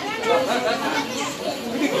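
Crowd chatter: several people talking at once, their voices overlapping into an unclear babble.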